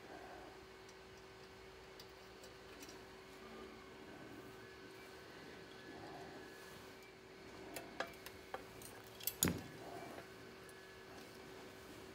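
Small metal clicks and taps of steel parts being handled, as cotter pins are fitted into a pedal car's powder-coated steering brackets. There are a few sharp ticks about eight to nine seconds in, the loudest near the end of that run, over a faint steady hum.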